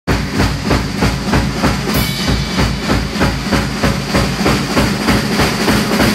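Live rock band playing with a fast, even drum beat, the kick drum and cymbals hitting about four times a second under guitars and bass.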